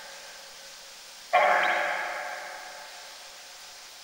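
Geobox ghost box putting out a single voice-like tone a little over a second in, starting abruptly and dying away slowly in a long echo.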